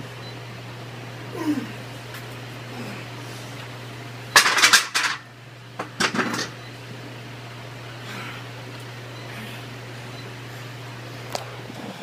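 Heavy 100-pound hex dumbbells clanking against a metal rack as they are set down: a loud, ringing clatter of several hits about four and a half seconds in, then a shorter clank a second later. A steady low hum runs underneath.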